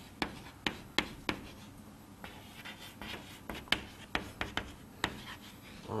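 Hand-writing strokes: a run of short, irregular scratches and light taps as a heading is written out.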